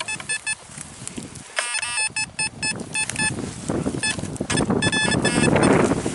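Metal detector giving quick runs of short, high electronic beeps as its coil passes over a dug hole, signalling metal still in the soil. Over the second half a louder scraping and crunching of soil, as a shovel digs.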